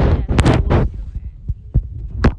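Handling noise on a phone's microphone as the phone is passed from hand to hand: loud low rumbling and rubbing thumps in the first second, then a few short sharp knocks.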